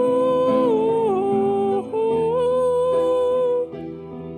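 A voice singing the long held "ooh" line of a piano ballad over piano chords. The notes step down and back up, with a short break in the middle, and the voice stops shortly before the end.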